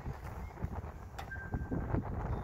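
Wind buffeting the microphone with a steady low rumble. About a second and a half in, a paint thickness gauge gives a single short, flat electronic beep as it takes its reading on the car roof.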